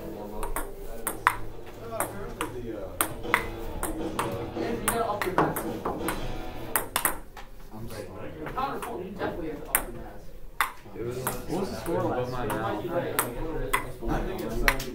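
Table tennis rally: a ping-pong ball clicking sharply back and forth off paddles and the laminate tops of pushed-together classroom tables, about one or two hits a second, with voices murmuring in the background.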